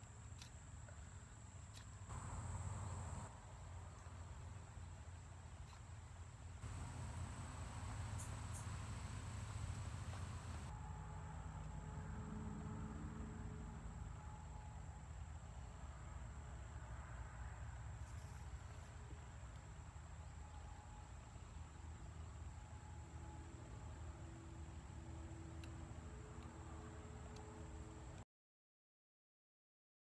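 Faint, steady high-pitched drone of insects, with a low rumble underneath.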